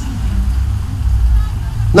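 A steady low rumble fills a pause between a man's phrases of speech, and his voice comes back right at the end.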